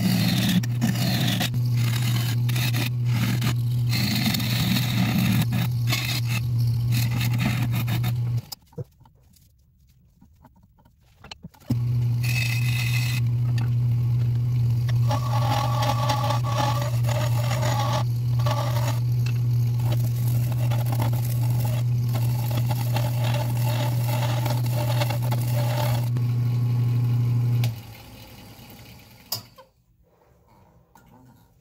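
Wood lathe running with a steady hum while a gouge cuts a spinning shoestring acacia crotch bowl blank, with uneven scraping as the shavings come off. The sound breaks off abruptly about eight seconds in, comes back about three seconds later, and stops near the end.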